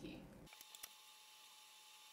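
Near silence: room tone with a faint steady tone and two faint clicks, after the tail of a spoken word.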